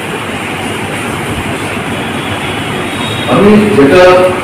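Steady rushing background noise with no rhythm or pitch in a pause between speech. A man's voice through a microphone returns near the end.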